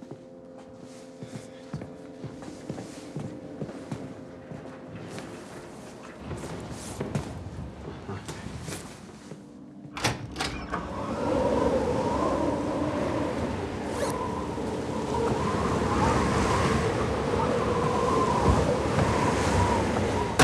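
Film soundtrack: a low, sustained musical drone with faint ticks, then a thunk about ten seconds in. After it comes a louder, steady rush of blizzard wind with a howling tone.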